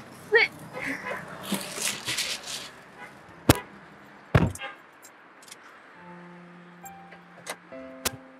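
A car door shutting: two sharp knocks about a second apart, after a few seconds of rustling. Soft background music with held notes comes in near the end.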